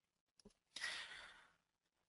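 Near silence broken by one faint breath from the presenter into the microphone, lasting under a second and starting about three-quarters of a second in.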